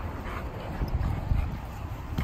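Two dogs play-wrestling on leashes: scuffling sounds with irregular low thumps and rumble.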